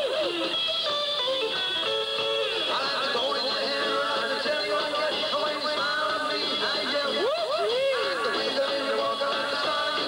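Rockabilly band playing live on electric guitar, upright bass and drums, the lead line swooping up and down in pitch a few times.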